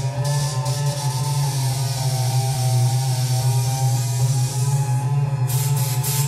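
Experimental electronic drone music played live from a computer and mixer: a steady low hum with several sustained tones layered above it and a hiss of noise on top. Near the end the hiss cuts off and turns into a flickering, stuttering texture.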